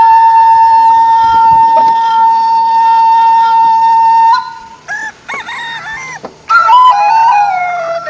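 Flute-led background music. One long held note lasts about four seconds, then after a brief break come bending, ornamented melodic phrases.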